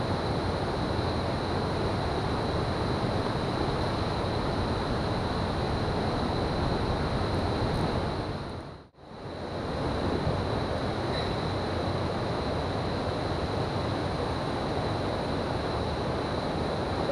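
Steady rushing of water pouring over a river weir, mixed with wind buffeting the microphone, with a faint steady high-pitched whine over it. The sound dips out briefly and fades back in about nine seconds in.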